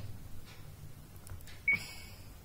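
A faint steady low hum, broken about 1.7 s in by a single short, sharp click with a brief high blip.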